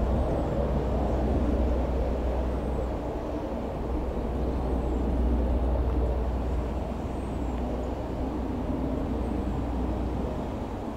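Royal Navy AgustaWestland Merlin HM2 helicopter, a three-engined turboshaft machine, flying past: a steady deep drone of rotors and turbines that swells a little about a second in and again around the middle, then eases slightly.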